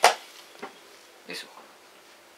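A chess clock's button pressed with one sharp click as a blitz move is completed, followed by a faint tap about half a second later.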